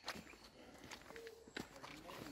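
Faint footsteps on a dirt path scattered with fallen leaves, a handful of separate soft steps.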